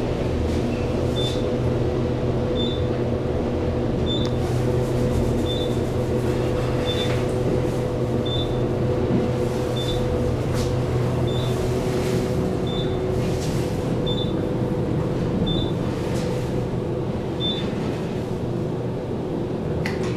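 ThyssenKrupp passenger elevator, rated 500 feet a minute, descending: a steady hum and rush of the moving car with a few faint rattles. A short high beep repeats about every second and a half.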